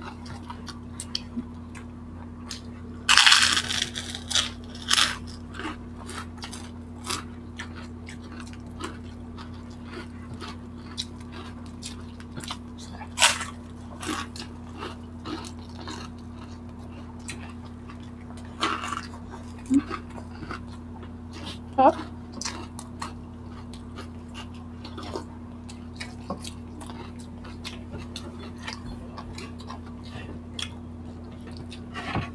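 Close-up eating sounds: crunchy bites into chicharon (crispy pork rind), chewing and lip smacks, with a dense burst of crunching about three seconds in and scattered clicks after. A steady low hum runs underneath.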